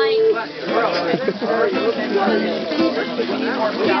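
People talking over one another while an acoustic guitar is played.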